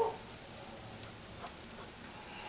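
Mechanical pencil lead scratching across paper in a run of short drawing strokes, about two or three a second. A brief, louder sound comes right at the start.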